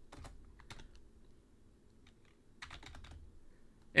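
Faint typing on a computer keyboard: a short run of keystrokes, a pause of about two seconds, then another short run near the end.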